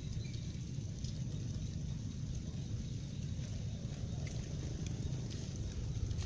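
Footsteps of a person walking on a wet path, with a steady low rumble of handling noise and a few faint taps.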